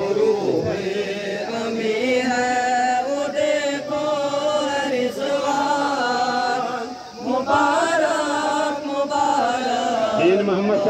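A man's voice chanting into a microphone in long held notes, in two drawn-out phrases with a brief break about seven seconds in.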